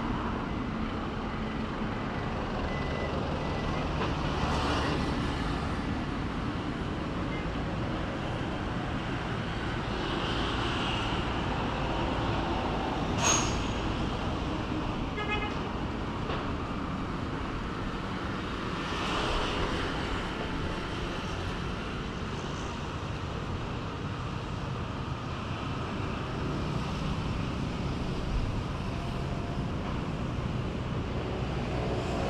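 Steady background of road traffic with low engine hum, swelling a few times as vehicles pass, and one sharp click about thirteen seconds in.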